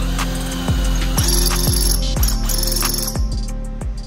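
A cordless drill cutting into a VW intake manifold casting with a 21/64 bit, in two short bursts about a second in and in the middle, opening the hole for an eighth-inch pipe tap. Background music with a heavy bass beat runs underneath.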